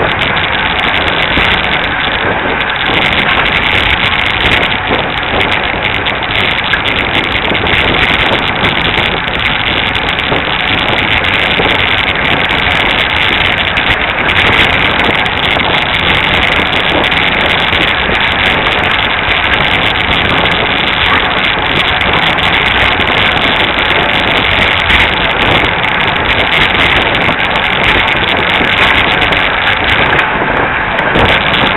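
Steady wind rush on a bicycle-mounted camera's microphone while riding at race speed, mixed with tyre noise on the road.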